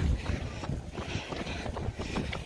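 Outdoor field audio from a moving phone: wind buffeting the microphone with a low rumble, over a quick, uneven patter of footfalls on asphalt.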